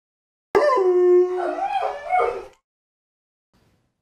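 A dog howling once for about two seconds, starting about half a second in, its pitch held steady and then wavering before it cuts off.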